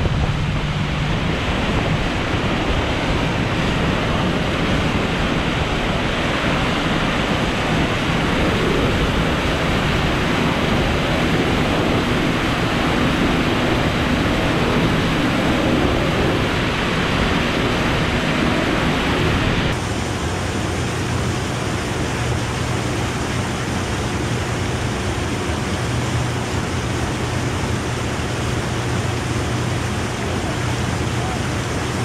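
Motorboat under way: a steady rush of wind and water with a low engine hum beneath. About two-thirds of the way through the sound changes suddenly, the hiss easing and the hum becoming steadier.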